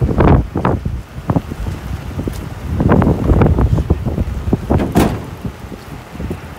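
Wind buffeting a phone microphone in uneven gusts, with a sharp click about five seconds in.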